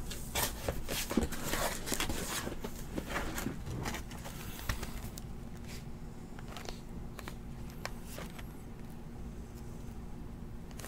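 Faint rustling and small clicks of a cardboard trading-card box being handled and turned over in the hand, busiest in the first few seconds.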